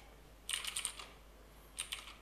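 Computer keyboard typing: a quick run of keystrokes about half a second in, and a few more near the end.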